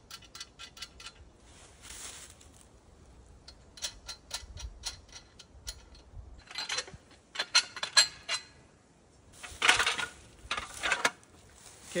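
Metal frame of a climbing tree stand clinking and rattling as it is worked off a tree trunk, in scattered clusters of sharp metallic knocks that are loudest near the end.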